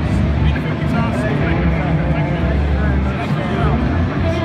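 Trade-show floor din: many people talking at once, with bass-heavy music playing underneath.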